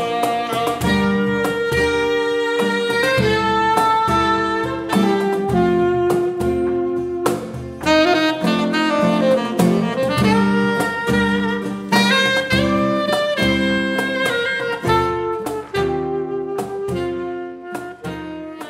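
Saxophone playing the melody over acoustic guitar and a cajón beat played by hand, in an instrumental passage of an acoustic trio.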